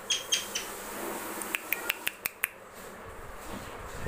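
Indian ringneck parakeet giving a few short, high chirps at the start, followed around the middle by about six sharp clicks in quick succession.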